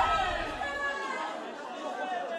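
Several voices shouting and chattering as a song's music ends; the low bass cuts off about a second in.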